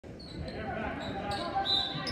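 Basketball game in a school gym: a ball bouncing on the hardwood floor amid chattering voices that echo in the hall, with a brief high squeak near the end.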